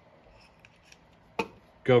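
Faint handling ticks, then one sharp knock about one and a half seconds in as a metal dial gauge is set down on a workbench. A man starts speaking near the end.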